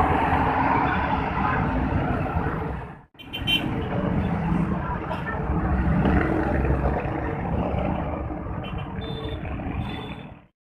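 Busy city road traffic: coach and car engines and tyres passing close below. It breaks off for an instant about three seconds in, then runs on.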